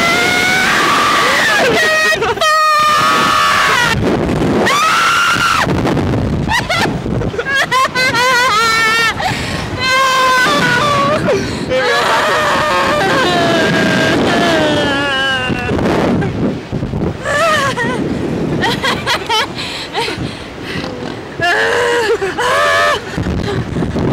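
Two riders on a slingshot reverse-bungee ride screaming and yelling as it launches and flips them, the cries high and wavering, one after another.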